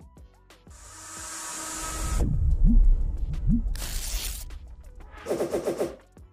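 Digital pack-opening sound effect over background music: a swelling whoosh builds for over a second into a deep boom, the loudest part, then a short bright crash, and a quick run of sparkly chime notes near the end.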